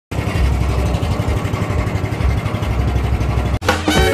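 Boat motor running steadily with the rush of water and wind, low and pulsing. About three and a half seconds in it cuts off abruptly and music begins.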